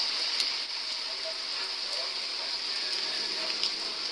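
Steady hiss of rain falling on wet pavement, with faint voices in the background.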